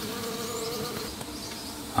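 A colony of Melipona stingless bees buzzing in their opened hive box, a steady hum.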